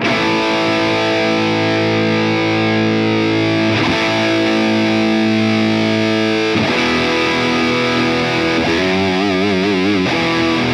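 Electric guitar (Sterling by Music Man Luke) played through a Diezel VH Micro head with the gain pushed up and reverb switched off, giving a distorted amp tone. Long sustained chords change about four and about six and a half seconds in, and the last one wavers with vibrato near the end.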